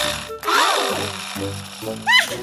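Light children's cartoon background music with a noisy, buzzing sound effect over the first second or so, and a baby's short babbled "da" near the end.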